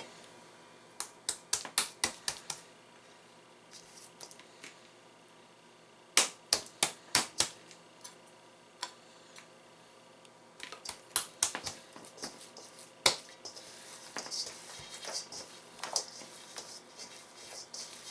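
Handling of bread dough in a stainless steel mixing bowl while a little oil is poured on from a small metal cup and spread by hand: several short runs of light, sharp taps and clicks with quiet gaps between, and a soft rustling near the end.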